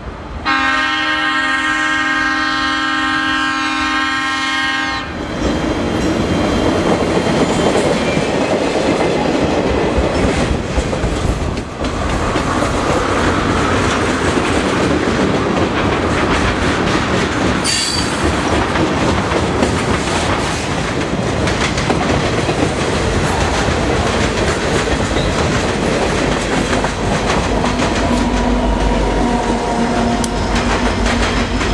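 Freight train's diesel locomotive air horn sounds one long chord for about five seconds. Then the train rolls past close by, its tank cars' wheels clacking over the rail joints, with a brief squeal partway through and a low steady tone from a passing locomotive near the end.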